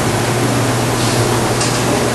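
Steady background hiss with a low constant hum: the room and recording noise of a lecture hall.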